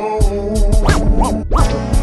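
Chopped and screwed hip hop track: a slowed-down beat with drum hits, deep bass and sustained chords, with three quick record-scratch sweeps rising and falling in pitch in the second half.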